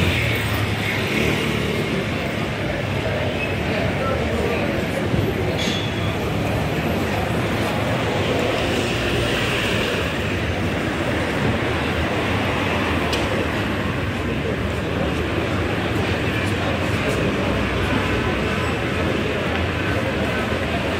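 Steady city street noise of traffic, with indistinct voices of people nearby.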